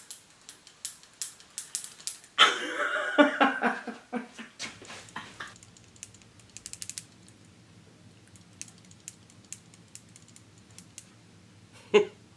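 Irregular clicks and clatter from the hand-held generator torch being handled, with a louder rustling burst a couple of seconds in. About four and a half seconds in, a low steady hum starts as the workshop lights come on, with only occasional small clicks after.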